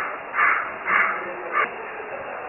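A crow cawing: harsh calls about half a second apart, the last one shorter.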